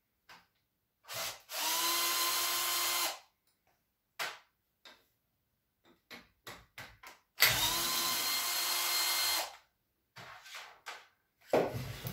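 Cordless drill-driver running in two steady bursts of about two seconds each, driving the screws of an electric water pump's housing, with short clicks and knocks of handled metal parts between the bursts.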